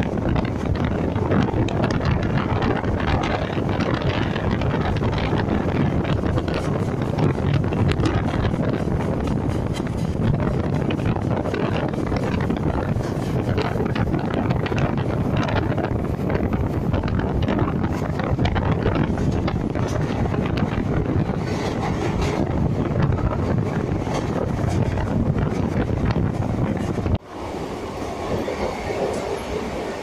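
DEMU passenger train running at speed, heard from inside the coach by an open window: a steady rumble and rattle of wheels on the rails. About 27 seconds in the noise drops suddenly and carries on quieter.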